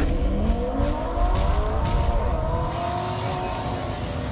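Car engine revving: the pitch climbs over the first second, then holds at high revs and eases down slightly near the end. It is a produced sound effect under an animated intro.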